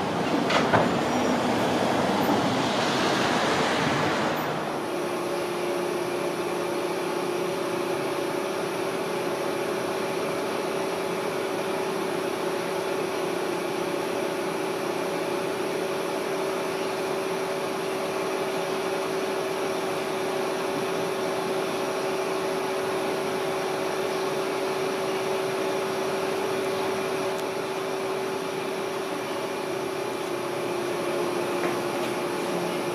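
Street traffic noise for the first four seconds or so, then a steady hum with a constant pitched tone as the Polybahn cable funicular car runs along its track.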